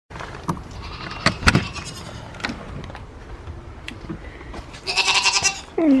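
A goat bleating once, loudly and with a quaver, about five seconds in. Before it come a few sharp clicks and knocks of a door latch as a door is opened.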